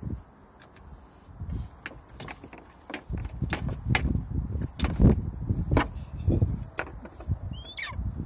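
A golden eagle rummaging on a car boot: its wings beat and its talons knock and scrape against the car, making a run of sharp clatters. Near the end it gives a high, thin call that falls steeply in pitch.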